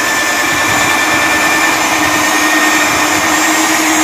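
KEN magnetic-base drill running steadily with a constant whine as its cutter bores slowly through the thick rubber of a ship's tyre fender. The rubber is smoking from the friction heat between the cutter and the tyre.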